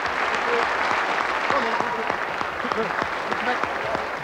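A studio audience applauding steadily, a dense patter of hand claps, with a few short calls and voices heard above it.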